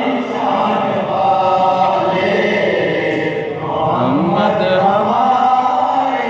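A group of men chanting a devotional manqabat refrain together with a lead reciter, several voices singing in unison.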